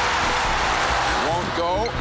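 Basketball arena crowd cheering, a dense steady roar heard through an old TV broadcast. A commentator's voice cuts in near the end.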